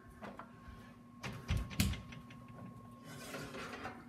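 Oven door being opened and a baking pan drawn out over the oven rack: a few soft clunks and knocks, the loudest about a second and a half in.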